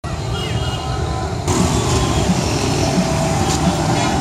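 Roadside traffic noise: a steady wash of motor vehicles, with voices in the background. It gets louder and hissier about a second and a half in.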